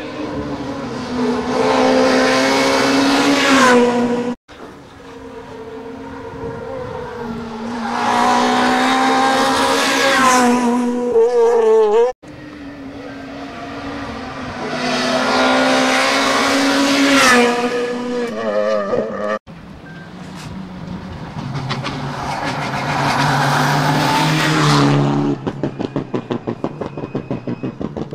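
Rally cars' engines revving hard through a bend, one car after another, each pass rising in pitch and then cut off abruptly, four passes in all. In the last few seconds the engine sound breaks into a rapid stutter of pulses, about five a second.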